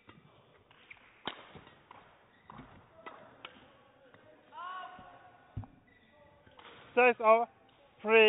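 Badminton rally: sharp racket strikes on the shuttlecock and shoe squeaks on the court floor, spaced irregularly over several seconds. It ends with two loud, short shouts near the end as the point is won.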